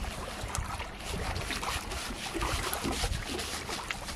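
Hands rubbing and pressing a crumbly bait mix on a plastic sheet, with irregular rustling and crinkling, while wind buffets the microphone with low rumbles.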